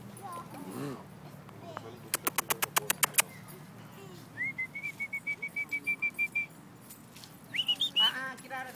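A rapid run of about ten sharp clicks lasting about a second. Then a bird calls in a quick series of short, even-pitched notes for about two seconds, and a rising whistled note comes near the end.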